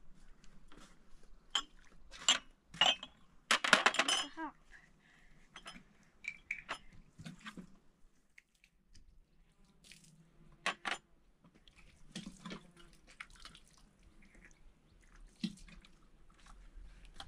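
Small glass tea glasses clinking against each other and knocking down onto a plastic tray in a string of separate light clicks, with one louder ringing clatter about four seconds in.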